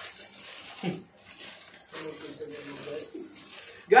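A man's voice humming softly, low and wavering, ending in a short laugh near the end.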